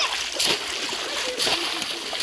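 Water splashing and sloshing in shallow water, with sharper splashes at the start, about half a second in and about a second and a half in.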